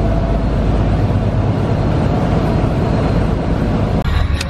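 Steady, loud low rumble of a vehicle's engine and running noise, heard from on board while travelling.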